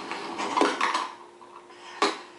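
A short run of clattering knocks from hard objects striking each other or a desk in the first second, then a single sharp knock at the end.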